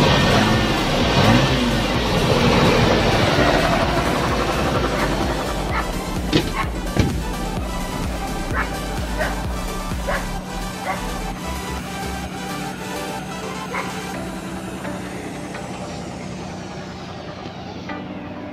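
Nissan RB25DE 2.5-litre straight-six revved by hand at the throttle while still cold, with music laid over it. The sound is loudest at the start and fades away over the last several seconds.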